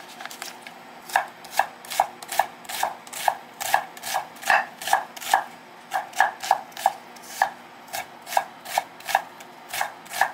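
Chef's knife dicing an onion on a wooden cutting board: a steady run of sharp knife strikes on the board, about two to three a second, starting about a second in.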